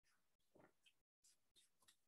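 Near silence, with only very faint rustling from a paperback picture book being handled.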